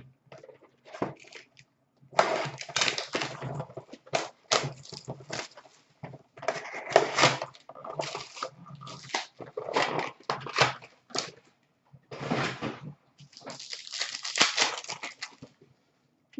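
Hobby box and foil card packs being opened and ripped by hand: irregular bursts of crinkling and tearing wrapper, with cards and packaging handled, quieter for the first two seconds.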